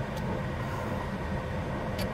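Steady low rumble inside a car cabin, as of the car's engine idling.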